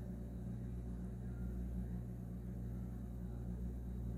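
A steady low hum that does not change, with nothing else standing out.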